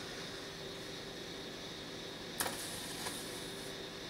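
Steady background hum, then about two and a half seconds in a sharp snap and about a second of hissing fizz as the smokeless-powder coating on an electrically heated nichrome wire coil ignites and burns off.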